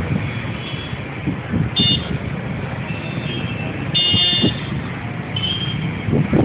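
Steady road-traffic noise, with short vehicle horn honks about two seconds in, a longer honk about four seconds in and a fainter one near the end.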